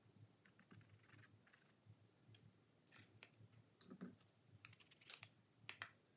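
Near silence: room tone with faint, scattered small clicks and taps.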